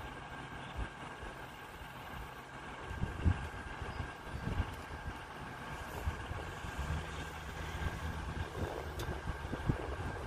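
A vehicle engine idling faintly as a low steady hum, with some low rumbling bumps a few seconds in.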